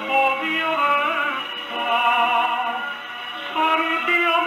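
A 1941 Italian tango-serenata played from a 78 rpm shellac record: a sung vocal line over the band, with several held and gliding notes. The sound is narrow and dull, with no top above about 4 kHz, as on an old disc.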